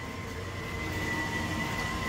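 Steady low hum and hiss of running machinery, with a thin, steady high-pitched whine.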